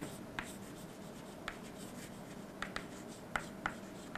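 Chalk writing on a chalkboard: light scratching with a few short, sharp taps as the chalk strikes the board at the start of strokes.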